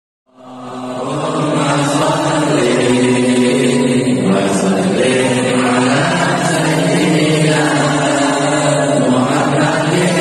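Men's voices chanting slowly in unison, an Islamic devotional chant, with long held notes that change every second or two; it fades in just after the start.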